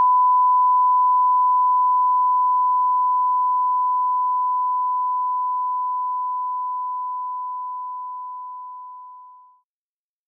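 A 1 kHz sine-wave test tone with a linear fade, played dry with no compression: one pure, steady pitch that starts loud, grows quieter throughout, dies away faster near the end and stops just before the end.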